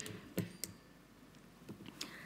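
A quiet pause in a lecture room, broken by a few faint short clicks about half a second in and again near the end.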